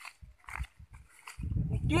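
Low rumble of wind buffeting the microphone, building about one and a half seconds in, after a few faint low thumps; a man's voice begins at the very end.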